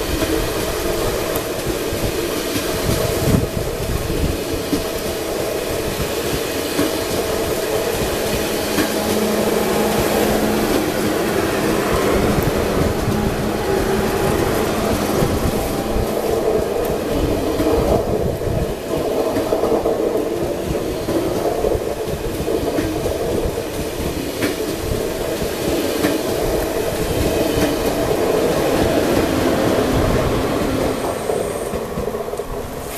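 SNCF TGV Duplex double-deck high-speed train passing close by, with a steady rolling noise of its wheels on the rails. A faint steady hum joins about eight seconds in and fades some ten seconds later.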